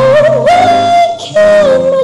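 Live singing of a slow ballad: long held, slightly wavering vocal notes over sustained chords from the accompaniment, with a brief break in the voice just past a second in before the next held note.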